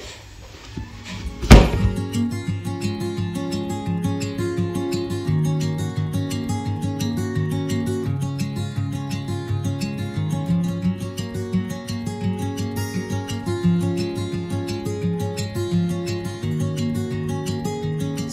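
A single loud thump about a second and a half in, then background music of quick, evenly repeated plucked notes over a steady low line, running on without a break.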